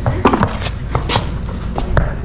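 Horse's hooves and boots stepping and shuffling on a concrete floor: about six sharp, uneven knocks in two seconds, over a low steady rumble.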